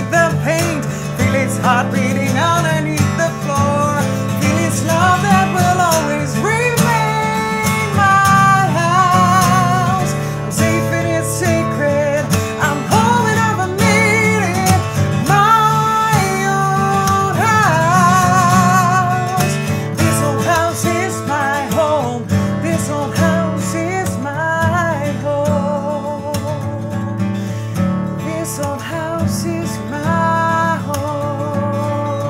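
A woman singing with an acoustic guitar accompanying her, live and unamplified. Her voice holds long, wavering notes over the steady guitar.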